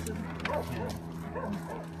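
A dog whimpering in a few short, high whines.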